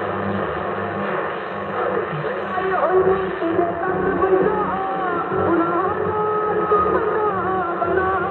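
Music from a medium-wave AM broadcast station, played through the speaker of a Sailor 66T marine receiver: a wavering melody line over a constant hiss of reception noise, with no treble above about 4 kHz.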